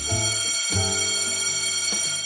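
Slot game's mega-win jingle: a steady, high, bell-like electronic ringing held over lower synth notes that change twice. It is the celebration sound for a full grid of bells paying out with the x5 prize multiplier.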